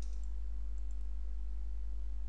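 A few faint computer mouse clicks in the first second, over a steady low hum.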